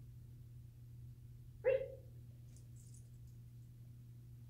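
A dog gives a single short bark about one and a half seconds in.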